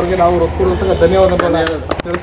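A man talking, then a few scattered hand claps from several people starting in the last half second.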